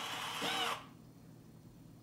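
The last of the show's music, played through a TV, ends with a sliding note that rises and falls. It cuts off suddenly under a second in, leaving only faint room hiss.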